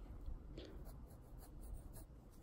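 Faint scratching of a wooden pencil on sketchbook paper, in a few short strokes as a small circle is drawn.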